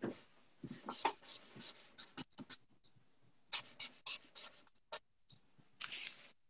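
Pens and crayons drawing on paper, worked with both hands at once: quick, irregular scratchy strokes in two runs, with a short pause around the middle.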